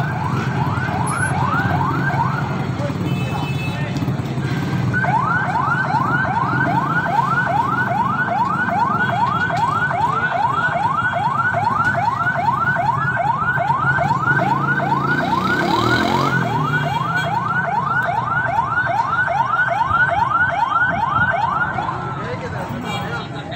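Fire engine's electronic siren sounding in quick rising sweeps, about three a second. It breaks off about three seconds in and starts again near five seconds.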